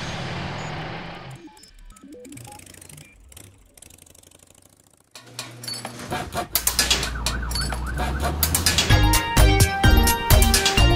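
A children's song fades out, and after a few quiet seconds a new cartoon-song intro begins with a fire engine siren sound effect wavering up and down over a steady low note. A beat comes in near the end.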